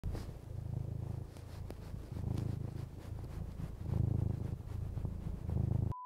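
Domestic cat purring, a low rumble that swells and fades with each breath, about once a second.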